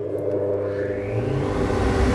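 SuperFlow SF-600E flow bench spinning up and drawing air through a corrugated hose: a rising whine over a rush of air that swells and gets louder. The air is made extra loud by the hose's sharp ribs.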